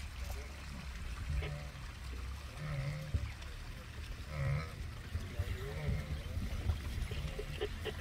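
A wildebeest herd grunting and lowing, short low calls coming about every second or so, over a steady low rumble.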